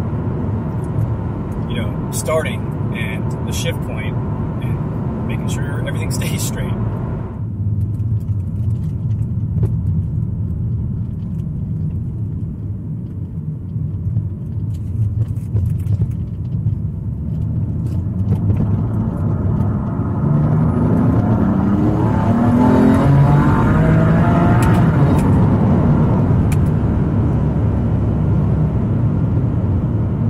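Cabin sound of a BMW F80 M3's twin-turbo S55 inline-six, fitted with upgraded Pure Turbos, cruising with a steady low drone under the road noise. About two-thirds of the way through, the engine note climbs in pitch as the car accelerates, and the sound stays louder to the end.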